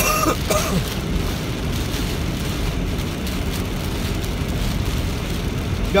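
Inside a car's cabin while driving through heavy rain on a wet road: a steady low rumble with an even hiss from the tyres on the water and the rain on the car. A throat is cleared right at the start.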